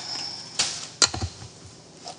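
Kitchen handling noises: a brief brushing sound about half a second in, then a sharp knock with a short low thud about a second in, as of an object put down on a hard surface.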